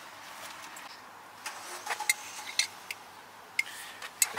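Car-park background noise with a few light, scattered clicks and knocks.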